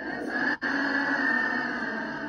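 A large group of young voices together in unison, loud and sustained, with a sudden brief break about half a second in.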